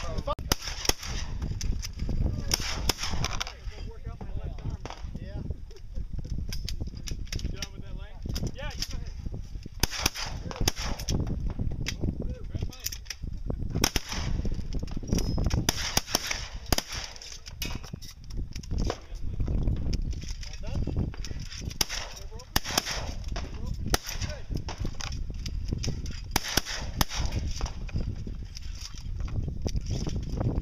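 Shotguns firing at clay targets: many sharp shots at irregular intervals, sometimes several close together.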